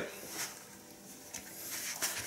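Quiet room with faint rustling and handling noise as an electric guitar is lifted and held out, with a small tick just over a second in.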